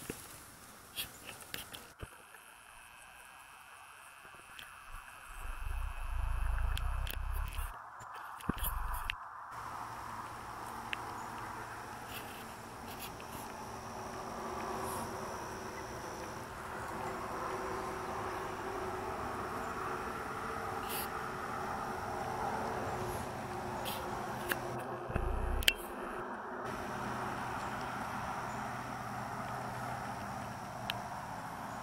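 Insects buzzing steadily, growing in from about ten seconds in, with a faint high thin tone later on. There are scattered small clicks, and low rumbles on the microphone around five to nine seconds in and again near the end.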